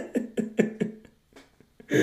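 A man laughing in short breathy bursts, about five a second, dying away about a second in: a rueful laugh at a losing lottery ticket.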